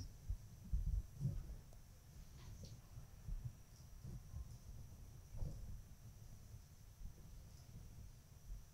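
Quiet room tone with a steady low rumble and a few faint, soft rustles from small movements.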